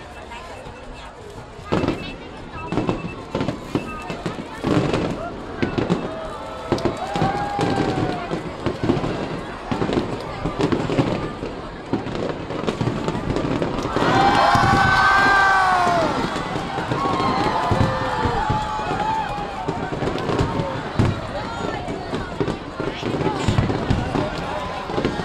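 Aerial fireworks display: shells bursting overhead in a string of sharp bangs and crackles, echoing between buildings. People's voices are heard throughout.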